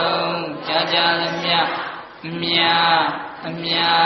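Buddhist chanting: voices reciting on a steady held pitch in repeated phrases, with a brief pause for breath about two seconds in.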